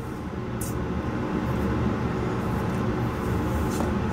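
Steady low hum and hiss of background room noise, with one faint short tick about half a second in.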